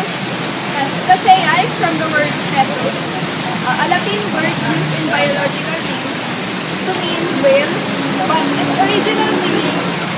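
Steady, loud rush of flowing water in a pool enclosure, continuous throughout.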